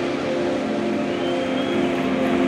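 Electric guitar amplifiers left ringing at the end of a song, a steady drone of several held tones with feedback. A faint higher tone glides briefly about halfway through.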